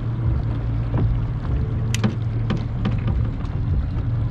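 Boat engine idling with a steady low hum, with a few sharp small clicks about two seconds in and near the end.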